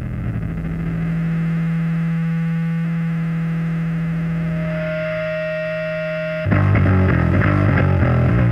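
Hardcore punk recording opening on a held, distorted electric guitar drone, with a higher ringing tone joining it partway through. About six and a half seconds in, the full band comes in loud with drums and guitars.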